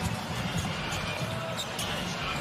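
A basketball being dribbled on a hardwood court, with short repeated bounces over a steady arena background with faint music.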